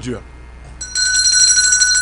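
A high electronic ring starts just under a second in: several steady tones with a fast trill through them, carrying on without a break.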